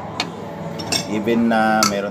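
Dishes and utensils clinking on a tabletop, with a sharp clink just after the start and another near the end. A voice sounds briefly in the second half.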